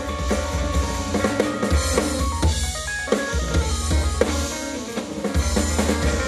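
Live band music: a drum kit keeping a steady beat under a deep bass line, with pitched keyboard notes on top.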